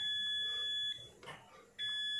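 Digital multimeter's continuity buzzer beeping on the pins of a removed MOSFET: one steady high beep of about a second, then a second beep starting near the end. The beep signals that the MOSFET is fully shorted.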